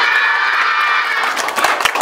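Many children shouting and cheering together, with a few sharp taps near the end.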